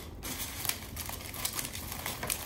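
Aluminum foil crinkling as a strip of duct tape is wrapped and pressed around a foil figure: a run of small, irregular crackles, with a couple of sharper ones near the middle.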